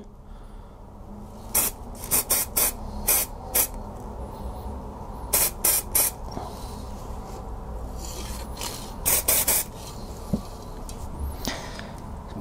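Aerosol can of Army Painter white spray primer fired in short bursts, about a dozen brief hisses in three clusters with pauses between, coating a miniature lightly.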